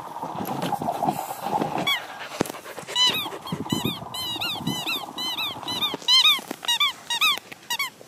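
A squeaky bone-shaped dog toy squeaking over and over as a beagle chews it: short squeaks that rise and fall in pitch, several a second, beginning about two seconds in.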